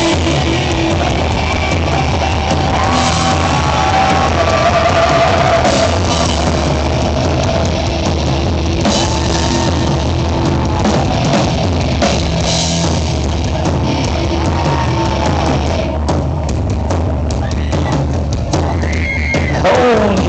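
Live horror-rock band playing loud through a club PA: electric guitars, bass and drum kit, with a wavering lead guitar line over the top. In the last few seconds the sound thins and sharp drum hits stand out.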